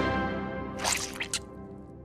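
Background music dying away, with a few short, wet squishing cartoon sound effects about a second in, as of a snail sliding along.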